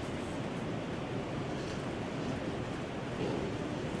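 Steady, even hiss of background room noise with no distinct event.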